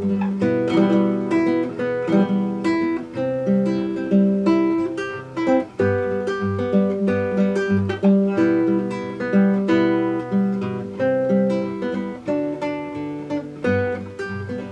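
Nylon-string classical guitar played solo, an instrumental passage of picked notes over a steady, repeating bass line.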